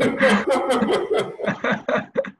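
A man laughing in a run of short, quick bursts.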